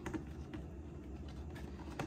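Faint, scattered light taps and clicks of a wooden paintbrush handle nudging against a clear plastic tube, over a low steady hum.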